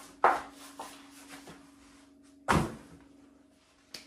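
Two sharp knocks of kitchen things handled at the worktop, about two seconds apart; the second carries a heavier low thud. A steady faint hum runs underneath.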